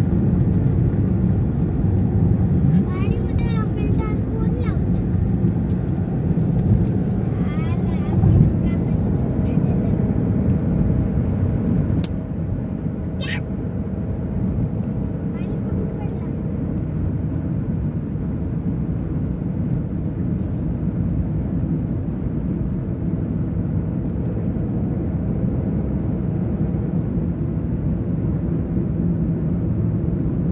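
Steady road and engine noise inside a moving car's cabin on a highway. The level drops a little about twelve seconds in, and the drive then continues through a road tunnel.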